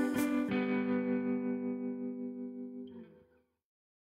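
Background music: a held chord, with the beat stopping about half a second in, then fading out and ending about three seconds in.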